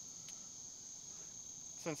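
A steady, high-pitched chorus of crickets.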